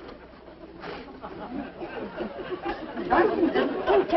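Studio audience laughter mixed with indistinct voices, swelling louder about three seconds in.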